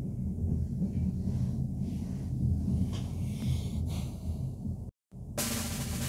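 Low, steady rumble inside an intercity train carriage as the train pulls away from the platform. The sound cuts out briefly just before the end, and music then starts, louder than the rumble.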